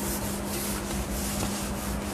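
Steady hiss with a constant low electrical hum underneath: the background noise of the recording, with no distinct strokes or knocks.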